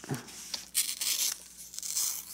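A sheet of origami paper torn in two by hand, pulled apart from a small starting tear at its top edge: a crisp paper ripping in a few spells, loudest about a second in.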